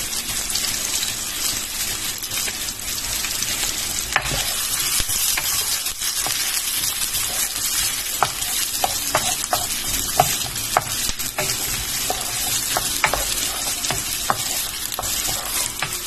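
Chopped onion and ginger sautéing in hot oil in a nonstick frying pan: a steady frying sizzle, with scattered sharp clicks and taps in the second half as they are stirred with a wooden spatula.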